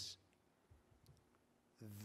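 Near silence in a pause between spoken phrases, with a few faint clicks about a second in. The voice trails off at the start and resumes just before the end.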